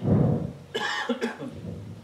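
A man coughing close to a microphone: a cough right at the start, then a second shorter one just under a second later.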